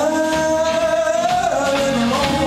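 Live blues trio of electric guitar, upright double bass and drums, with a man singing one long held note that ends about three-quarters of the way through.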